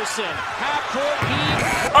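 Crowd noise with many overlapping shouting voices from a recorded televised college basketball game, during the closing seconds of a buzzer-beater play.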